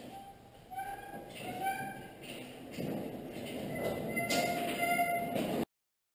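Squealing from the casters of a steel gantry crane as it is pushed across the shop floor with an engine hanging from it: several short squeals, then a longer one from about four seconds in, with shuffling steps and knocks. The sound cuts off suddenly near the end.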